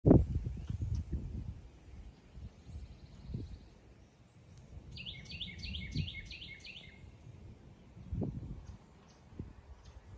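A songbird outdoors singing a quick run of about seven repeated high notes in the middle, with a fainter trill a little earlier, over irregular low rumbling on the microphone that is loudest at the start.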